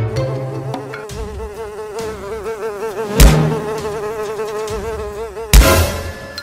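Cartoon sound effect of a housefly buzzing, a steady buzz that wavers in pitch. Two loud thumps cut in, about three seconds in and again near the end.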